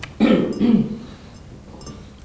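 A man's brief two-syllable vocal call, with a rise and fall in pitch, shortly after the start and lasting under a second.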